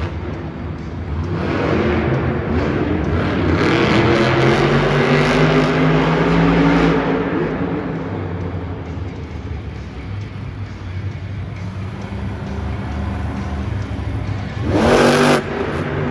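Megalodon monster truck's supercharged V8 revving hard, its pitch climbing and falling over several seconds, then running lower and steadier. A loud burst of noise comes about a second before the end.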